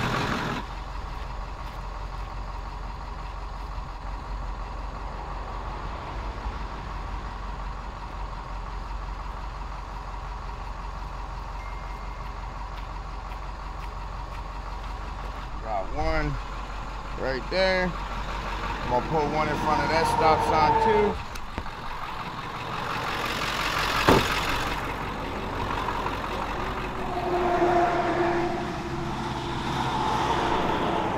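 A truck engine idling with a steady low hum. Past the middle a vehicle goes by amid short pitched sounds, and there is one sharp knock about three quarters of the way through.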